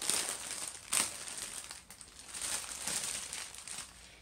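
Crinkling of the packaging around skeins of yarn as it is handled: irregular bursts of crackle, with a sharp crackle about a second in.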